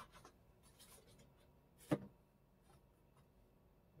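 Faint rustling of paper sheet music being handled on the piano's music stand, with one sharp tap about halfway through.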